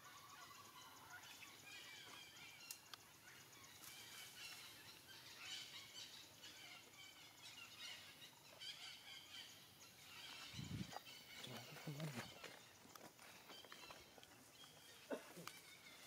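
Faint outdoor ambience with small birds chirping on and off throughout, and a few short, low calls about ten to twelve seconds in.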